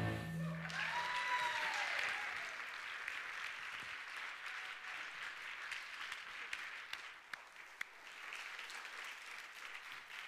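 Church audience applauding at the end of a musical performance, the clapping tapering off over several seconds. The last held note of the music dies away at the start.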